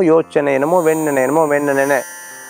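A man's voice: a brief sound, then a long, drawn-out vocal sound held at a steady pitch for over a second, like a thinking 'hmm' or a drawn-out word.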